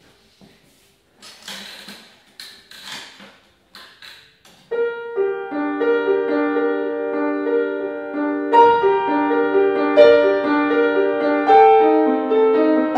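Shuffling, knocking noises as someone sits down at a grand piano, then about five seconds in a solo grand piano starts: a minimalist piece of steady, repeating broken-chord patterns that grows fuller, with lower notes added, past the middle.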